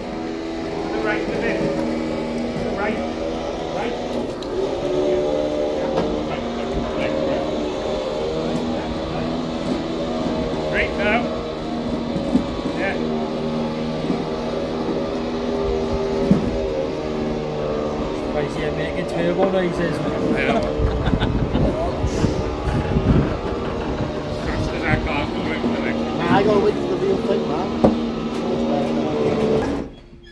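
Recovery truck's winch pulling a car up onto the flatbed: a steady motor drone with a few knocks about two-thirds of the way through, cutting off suddenly at the end.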